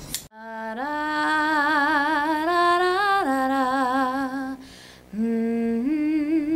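A woman's voice singing long, held notes with a wide vibrato, without accompaniment: a phrase that climbs in steps, drops about three seconds in and breaks off near five seconds, then a new note starts.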